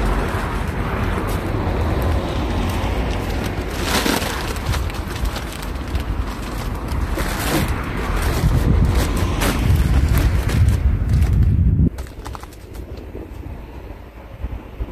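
Plastic sack of wood chips rustling and crunching as it is carried and pushed into a car's front trunk, over a heavy low rumble. The noise drops off sharply about twelve seconds in.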